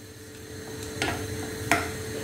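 Faint sizzle of water heating in a pan of cubed raw banana on a gas hob, over a steady faint hum, with two light clicks, one about a second in and one near the end.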